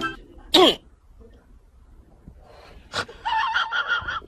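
Two short high-pitched vocal cries: a quick one that falls steeply in pitch about half a second in, and a higher, more sustained cry starting about three seconds in, with quiet between them.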